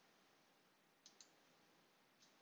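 Near silence with two faint computer mouse clicks in quick succession about a second in.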